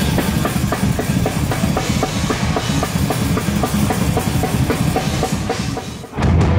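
Extreme metal music with fast, steady drumming on kick drum and snare, dropping out briefly right at the end.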